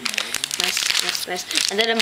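Plastic packaging of a pack of trading-card sleeves crinkling and crackling as it is handled, many quick crackles in a row.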